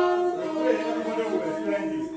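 A group of people singing together without instruments. A long held note near the start gives way to looser, overlapping voices.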